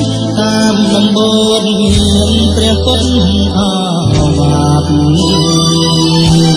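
Old Khmer pop song playing: a held bass line that changes note every second or two under a sustained melody, which bends in pitch about three and a half seconds in.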